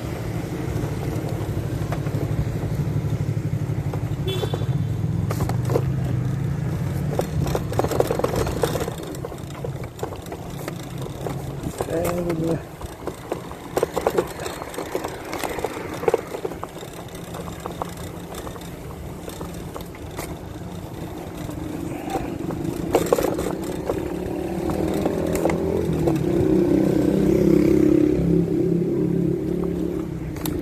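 Road traffic and wind noise heard while riding a bike along a roadside path, growing louder in the last several seconds.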